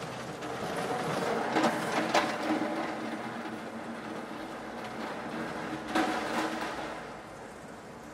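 Street ambience: a steady wash of city noise with a faint hum and a few sharp clacks, about one and a half, two and six seconds in.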